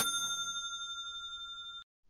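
Stream donation alert chime: a single bright, bell-like ding that rings on with a slow fade and then cuts off suddenly near the end. It signals that a viewer donation has come in.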